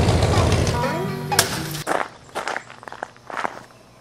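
Rattlesnake rattling its tail, a steady dense buzz that stops about a second in. It is followed by a few pitched sounds, a sharp knock, and then quieter scattered clicks.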